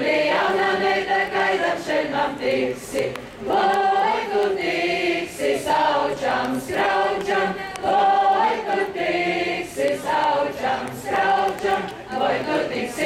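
A Latvian folklore group singing a traditional folk song together, several voices in long sung phrases with short breaths between them.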